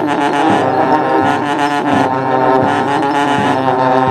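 Several long natural trumpets blown together in sustained, overlapping drone-like notes, over a bass drum beaten about once every 0.7 s.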